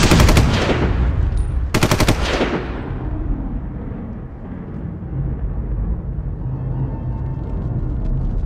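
Two short bursts of rapid machine-gun fire, less than two seconds apart, used as a sound effect in the soundtrack, each trailing off in an echo. A low, steady bass backing follows.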